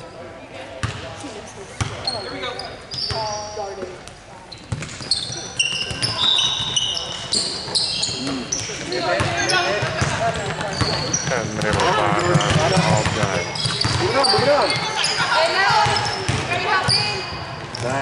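Basketball game sounds on a hardwood court in a large hall: sneakers squeaking, the ball bouncing, and players and coaches calling out. The voices grow louder about halfway through.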